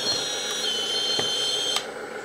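Hydraulic pump motor of a 1/14 LESU DT60 RC bulldozer running with a steady high-pitched whine as the rear ripper is worked. Its pitch drops a little about half a second in, and it stops with a click near the end.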